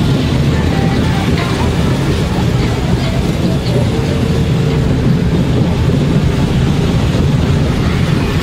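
Loud, steady low rumble and rush recorded while riding a moving fairground ride, with faint voices in the background.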